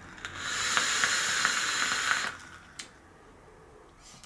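Vaporesso Armour Pro box mod firing an OBS Engine rebuildable tank at 65 watts with a 0.10-ohm coil during a long draw. Air hisses through the atomizer and the coil sizzles with small crackles for about two seconds. A single click follows.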